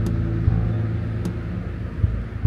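Steady outdoor background rumble, of the kind distant road traffic makes, with a couple of faint sharp clicks.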